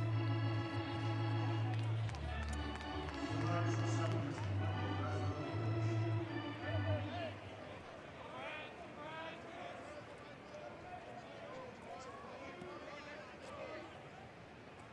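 Ballpark organ playing a short phrase of held chords over a deep bass line, with the notes changing about once a second, then stopping about seven seconds in. Crowd murmur and scattered voices from the stands follow.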